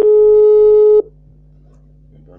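Phone call tone: one loud, steady beep about a second long that cuts off sharply, the sign that the call could not get through.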